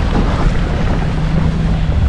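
Wind buffeting a handheld camera's microphone outdoors: a steady rushing noise with low rumble and no distinct events.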